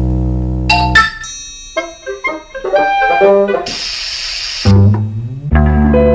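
A comic trombone passage: a low, blaring held note, a run of quick notes, a short burst of hiss, then another low held note.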